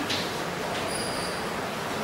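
Chalk writing on a blackboard, faint under a steady background hiss.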